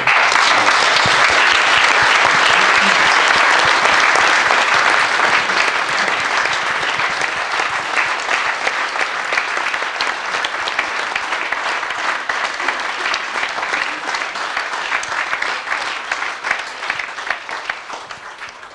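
Audience and stage guests applauding, a dense clapping that starts abruptly, holds strong for the first several seconds and slowly thins out, dying away near the end.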